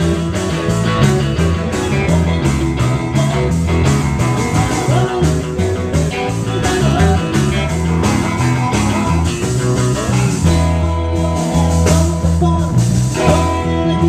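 Live band playing an amplified rock-and-roll/blues number: a man sings lead over electric bass, double-neck electric guitar and drums, with a steady beat and a walking bass line.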